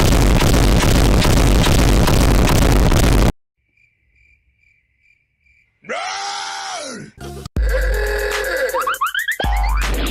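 A meme edit's sound effects: a very loud, distorted blast of noise for about three seconds, cut off suddenly into near silence, then a short groan-like sound effect, and after that the children's song comes back loud with an added rising, boing-like glide.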